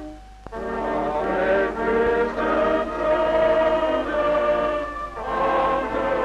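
A large congregation of men singing a slow hymn in long held notes, breaking briefly between lines just after the start and again about five seconds in. A faint steady low hum lies under it.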